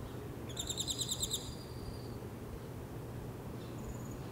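A bird calling: a quick, high string of about nine notes lasting under a second, followed by a short thin whistle, over a steady low background hiss.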